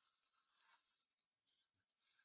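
Near silence between spoken remarks.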